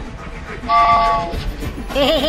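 Cartoon train-whistle sound effect: a short, steady chord of several tones, lasting under a second, about two thirds of a second in, over soft background music.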